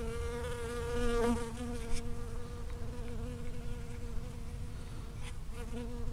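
Honeybee buzzing in flight between strawberry flowers, close to the microphone: a steady, clearly pitched wing hum, loudest in the first two seconds, then fainter.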